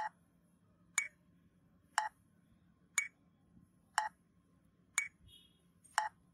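Metronome clicking steadily at one beat per second, seven clicks in all. Every other click sounds different, marking a two-beat (binary) meter with a strong first beat and a weak second beat.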